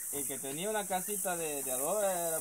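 A man's voice speaking quietly, over a steady high hiss of insects.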